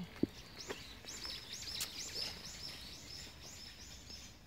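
A bird chirping, a quick run of short high rising-and-falling notes at about three a second, with a single soft knock just after the start.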